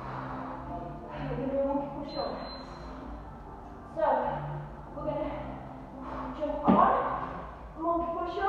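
A woman's voice talking, with one sharp thump a little before the end as a foot lands on a plastic aerobic step.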